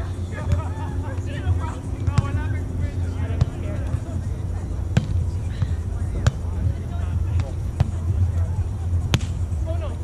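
A volleyball being struck by hands and forearms during a rally: several sharp smacks roughly a second and a half apart in the second half, over a steady low rumble and scattered voices.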